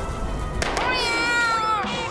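A rushing whoosh in the first half second as a burst of cartoon fire goes by. Then, about half a second in, comes a single high, drawn-out cry from a cartoon character, cat-like in tone, held for about a second and dipping in pitch at the end.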